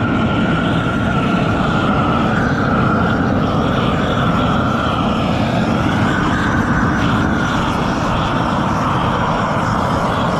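Propane roofing torch burning steadily, its flame heating the underside of a roll of SBS torch-on bitumen roofing felt to melt it onto the roof. The noise holds one steady pitch throughout.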